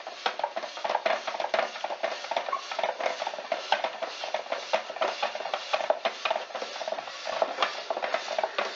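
Hand-cranked spiral slicer cutting a raw potato into thin slices as the crank turns: a rapid, continuous crunching and clicking.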